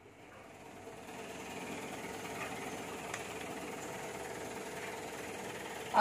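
A steady mechanical hum with a faint held tone, fading in over the first second.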